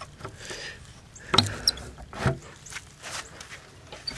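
Crawl-space access panel in a brick foundation being unlatched and pulled open by hand: two sharp knocks, about a second and a half and two and a quarter seconds in, with light scraping and rustling between.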